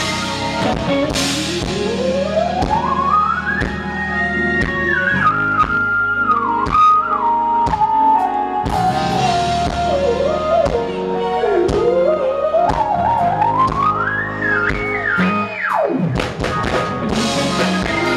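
Live smooth jazz band playing with drums, bass and cymbal crashes. A high lead line slides smoothly upward for a few seconds, steps back down, climbs again and then drops sharply near the end.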